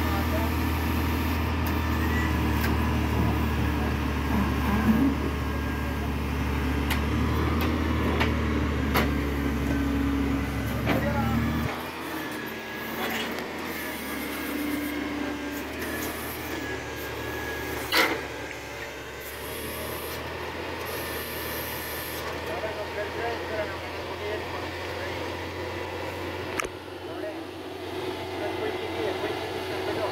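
Lorry engine running a truck-mounted hydraulic loader crane as it unloads concrete blocks: a steady low hum that drops away sharply about twelve seconds in. Occasional sharp clanks of blocks and crane gear come through, the loudest about eighteen seconds in.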